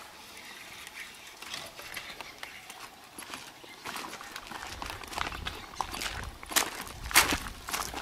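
Footsteps on dry, stony dirt and dead leaves: irregular scuffs and crackles, heavier and louder in the second half, with a low rumble alongside them.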